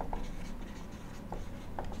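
Marker writing on a whiteboard, a few faint short strokes.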